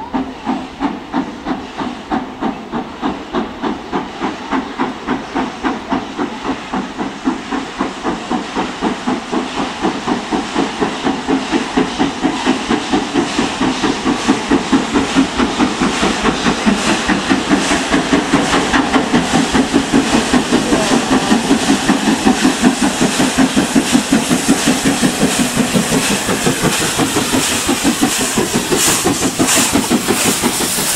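LMS Princess Coronation Class four-cylinder Pacific No. 6233 'Duchess of Sutherland' working a train at low speed. Its exhaust chuffs in an even rhythm over the hiss of steam from the open cylinder drain cocks, growing louder as the engine comes closer.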